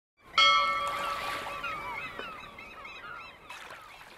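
Studio logo sound: a held tone with several pitches starts suddenly and fades, over a flurry of short rising-and-falling bird calls that die away.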